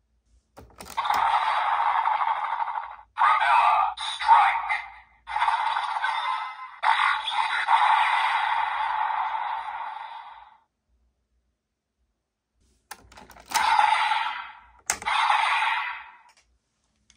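Desire Driver toy belt playing its Propeller Raise Buckle finisher through its small built-in speaker: electronic effects and music with a voice call of "Propeller Strike!", thin and limited to the middle of the range, in several long runs that stop about ten seconds in. Near the end, plastic clicks are followed by two short bursts of toy sound.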